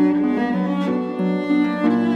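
Cello and concert pedal harp playing a Romantic duo: the cello carries a bowed melody in held notes that change every half second or so, over plucked harp accompaniment.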